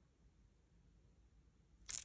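Near silence for most of it, then near the end a sudden short clatter of small resin flat-back hearts tipped together into cupped hands.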